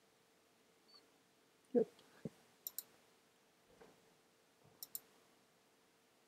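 Computer mouse button clicked twice, about two seconds apart, each click a quick press-and-release pair. Shortly after a spoken 'yep' comes one low knock.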